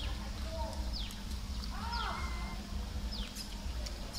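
Outdoor ambience with a bird's short, high call falling sharply in pitch, repeated about once a second. A single rising-and-falling call sounds about halfway through, over a steady low rumble.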